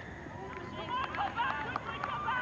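Players and spectators calling out across a rugby league ground, several faint overlapping shouts at once.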